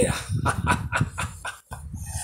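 A man laughing in a rapid cackle of short bursts, about eight a second, breaking off about one and a half seconds in.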